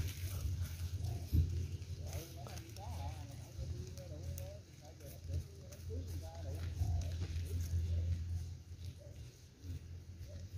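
A hand scraping and raking through dry leaf litter and loose soil at the base of a tree, over a steady low rumble. Faint wavering voice-like calls sound in the background through the middle.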